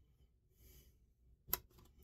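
A quiet room, broken by a faint soft rustle and then one sharp click about one and a half seconds in, followed by a few faint ticks.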